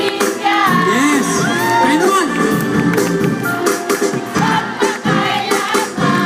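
Live band playing a song with a lead singer over drums and keyboards, picked up on a phone's microphone in the audience.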